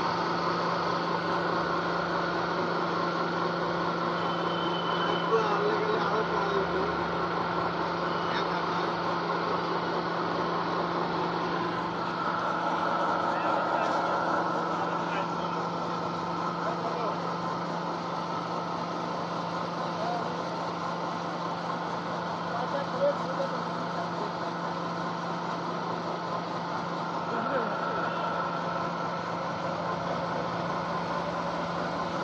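Small electric feed pellet mill (a 220-volt motor-driven machine) running steadily under load as it presses feed into pellets, a constant machine hum with a couple of brief knocks.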